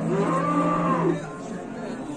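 A cow mooing once: one long low call lasting about a second, fading out just past the middle.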